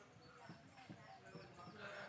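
Near silence: faint strokes of a marker writing on a whiteboard, with faint high chirps repeating a few times a second.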